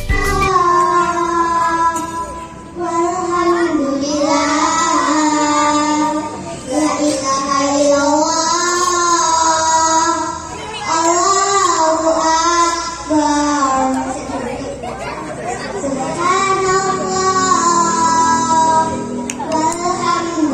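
Young girls singing a song into handheld microphones, holding long notes in phrases.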